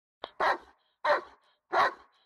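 A dog barking three times in a row, evenly spaced about two thirds of a second apart.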